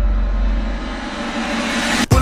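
Trailer sound design: a deep rumble fading away under a rising whoosh of noise that swells brighter and higher, then cuts off abruptly at the end.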